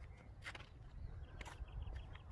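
Quiet outdoor ambience: a faint low rumble with a few soft clicks, the clearest about half a second in.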